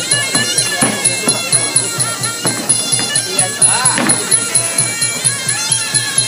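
Muay Thai fight music (sarama): a reedy Thai oboe (pi java) playing a wavering melody over a fast, even drum beat.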